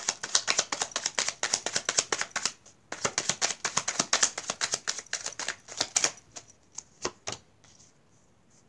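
A deck of cards shuffled by hand, giving fast runs of crisp clicking. There is a short break a little under three seconds in, then a second run, then a few last single clicks before it stops.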